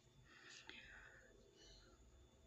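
Near silence, with a few faint soft noises.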